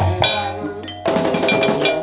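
Live ensemble music with drum strokes and ringing pitched percussion, with a sharp loud strike about a second in.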